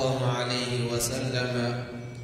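A man's voice reciting Arabic in a slow, melodic chant, holding long steady tones. The voice fades out near the end.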